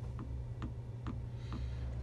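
Footsteps going down boat companionway stairs: light, evenly spaced knocks about two a second, over a steady low hum.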